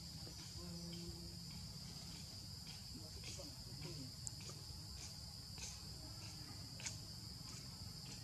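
Steady, high-pitched insect drone, faint, with a few short sharp clicks scattered through it; the loudest click comes about seven seconds in. A low rumble runs underneath.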